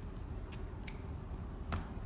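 White athletic tape being handled on a bare foot: a few short crackling clicks as the strip is pulled off the roll and torn, with a louder tap near the end as it is pressed down.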